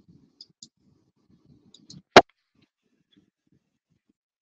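A single sharp click about two seconds in, preceded by a few faint ticks, over faint low rumbling noise.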